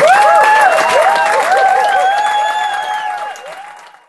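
Audience applauding, with several held, wavering pitched tones over the clapping; the sound fades out near the end.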